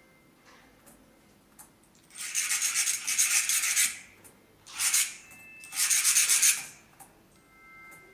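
A small flat needle file rasping rapidly back and forth over the edge of a thin sheet-metal puzzle part, in three bouts: a run of nearly two seconds, a short stroke, then another run of about a second.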